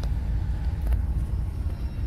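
Steady low rumble of a first-series Renault Scénic with its heater blower running, working again after its burnt, cut-out-prone relay socket was cleaned and tightened; a faint click about a second in.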